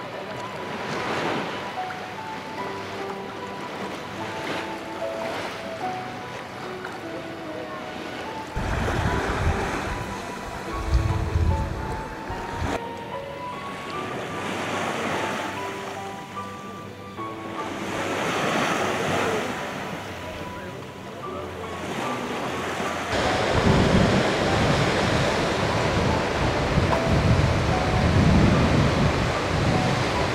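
Sea waves washing in and drawing back in repeated swells, with wind buffeting the microphone, heaviest in the last quarter. Soft background music with long held notes runs underneath for most of the first two thirds.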